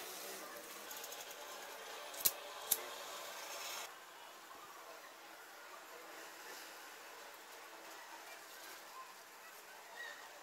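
Two sharp knocks about half a second apart, hard objects struck against a glass sheet while wooden dowels are handled on it, followed by low, quiet handling noise.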